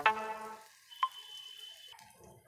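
Chopped onions and tomatoes frying in oil in a pressure cooker, sizzling faintly as they are stirred. A short held note sounds at the start, and a high steady tone comes in about a second in and lasts about a second.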